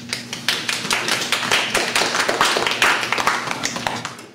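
Audience applauding: a dense patter of many hands clapping that begins as the speaker finishes and stops abruptly near the end.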